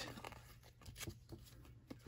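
Faint handling of baseball cards being flipped through: a few soft slides and small ticks of card stock against card stock.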